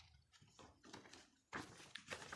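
Faint rustling and handling of paper leaflets and plastic packaging by hand, in a few short rustles, the loudest near the end.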